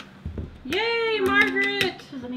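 A person's voice making a drawn-out vocal sound for about a second, starting a little before the middle, with a few light clicks and taps around it.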